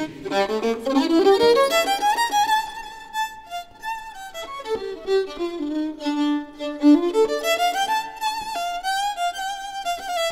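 Jazz violin playing a melodic solo line with vibrato: a quick climbing run at the start, a high held note, a descent to lower held notes in the middle, then a climb back up near the end.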